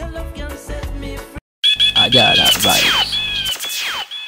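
A reggae track ends about a second and a half in. After a brief gap, a mixtape sound-effect drop starts: repeated high beeping tones and several fast, falling whistle-like sweeps.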